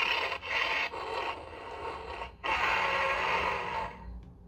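Playmates Battle Roar King Kong action figure playing its electronic monster battle sounds: a series of growls and roars with a brief break about two and a half seconds in.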